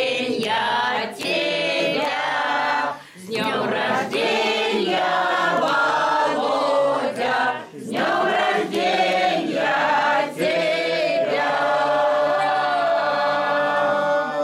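Amateur choir of mixed men's and women's voices singing a birthday greeting song together, in long held phrases broken by brief pauses for breath.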